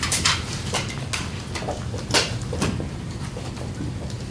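Room noise with a steady low hum and scattered short clicks and scrapes, the loudest about two seconds in.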